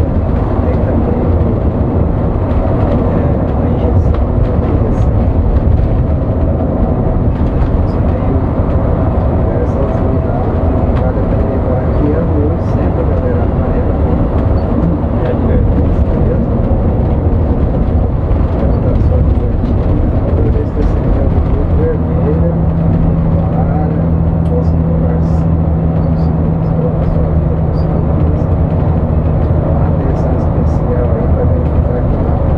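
Coach bus cruising on a highway, heard from the driver's cab: steady engine drone and road rumble. A steady low hum joins about two-thirds of the way through.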